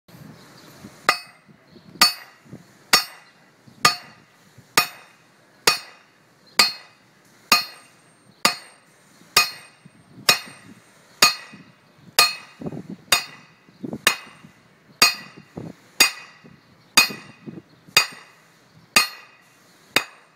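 Hammer striking a cast steel CL1 harrow disc about twenty times, a little under once a second, each blow a sharp metallic clang that rings on briefly. This is a toughness test of the disc.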